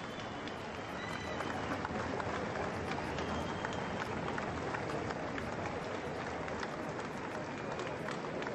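A large street crowd applauding: a steady ripple of polite clapping with crowd murmur underneath.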